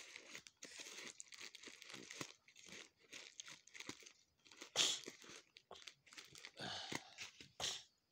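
Scissors cutting open a parcel's black plastic wrapping, with the plastic crinkling and crackling in a run of short snips and rustles. There are louder crackles about five seconds in and again near the end.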